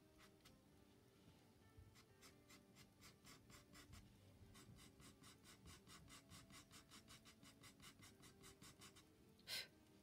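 Derwent charcoal pencil scratching faintly on Stillman & Birn Nova black paper in quick, short repeated strokes, about four a second, with one louder scratch near the end.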